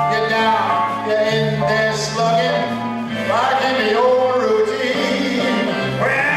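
A male singer sings an old-time variety song into a microphone over instrumental accompaniment with a steady, stepping bass line.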